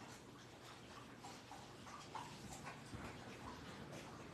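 Puppies barking faintly, a few short scattered sounds over quiet room tone.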